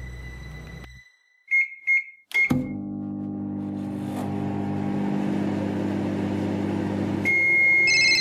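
Microwave oven: three short keypad beeps, then the oven running with a steady hum, and a longer high beep near the end.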